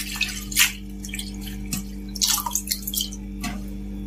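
Water dripping from freshly washed leafy greens onto a steel plate and pot, a few irregular drips and small splashes, over a steady low hum.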